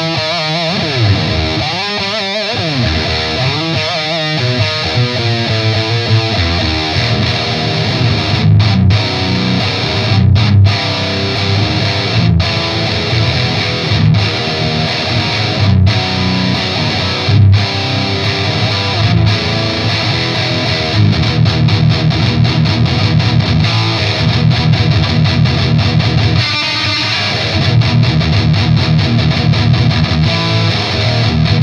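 Heavily distorted electric guitar, a Les Paul Custom through a Mesa Boogie Dual Rectifier amplifier, playing metal riffs. It opens with wavering sustained notes, moves to riffs broken by short sharp stops about every two seconds, then settles into fast, steady chugging in the second half.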